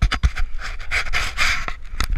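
Handling noise on a small action camera as it is moved: two sharp knocks at the start, then uneven rustling and scraping close to the microphone.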